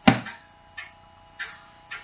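A paperback book being handled and put down: a short knock at the start, then a few soft rustles of paper.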